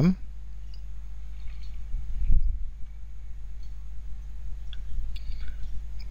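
A few faint computer mouse clicks over a steady low electrical hum, with one duller knock a little over two seconds in.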